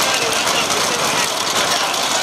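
A vehicle engine running under a steady rush of noise, with scattered shouts from spectators lining the course.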